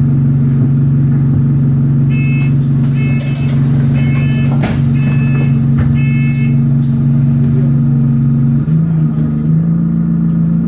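A bus engine heard from inside the cabin, running with a steady drone that steps up in pitch near the end as it picks up revs. Five short electronic beeps, about a second apart, sound over it in the middle.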